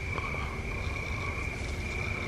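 Steady night-time chorus of calling animals, heard as one continuous high-pitched trill over a low background rumble.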